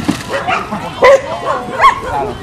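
A dog barking in a quick series of short, high barks, loudest about a second in and again near the end.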